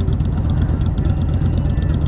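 Motorcycle engine running while riding, heard on the rider's own microphone as a steady low rumble mixed with wind noise.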